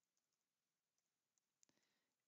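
Near silence, with a few very faint clicks of computer keys as a number is typed.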